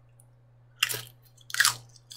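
Two loud crunches close to the microphone, about a second apart, as crunchy food is bitten and chewed.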